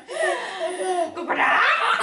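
A baby of about six months laughing out loud, the laugh getting louder and higher a little past halfway.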